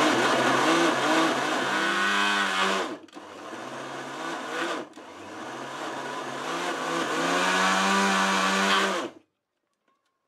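Tefal electric chopper blending a thick, oily paste of bacon, anchovies and dried tomatoes, its motor whirring in three runs: about three seconds, a quieter stretch of about two seconds, then about four seconds more, before it stops abruptly near the end. The motor's pitch wavers throughout.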